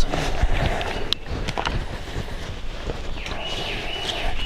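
Footsteps of a person walking a few quick strides over leaf litter and pine needles on a forest floor, a run of irregular soft steps and knocks.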